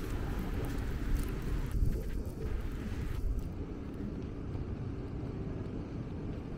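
Outdoor city street ambience: a low, uneven rumble with a thin hiss above it and a few faint clicks in the first two seconds. The hiss thins out after about three and a half seconds.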